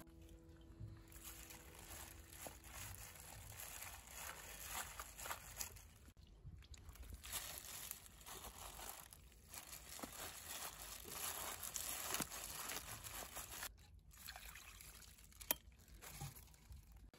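Hands handling partly frozen dongchimi: wet pickled greens and slushy ice in brine being lifted and laid into a plastic container, with faint irregular sloshing, dripping and crunching of ice.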